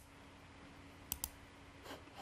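Computer mouse button clicked twice in quick succession about a second in, faint, over a low steady hum.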